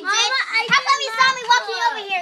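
Young children's high-pitched voices talking and calling out excitedly during play, the words unclear.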